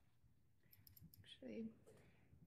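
A few quick, faint clicks of a computer mouse operating the surveillance-video playback software, followed by a brief murmured voice.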